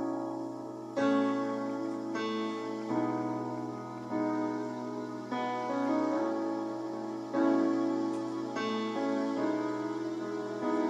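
Solo Yamaha CP stage piano playing a slow song intro: sustained two-handed chords over held bass notes, with a new chord struck about every second.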